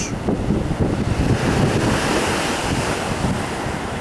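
Sea surf washing onto a rocky shore, the wash swelling around the middle, with wind buffeting the microphone in low rumbling gusts.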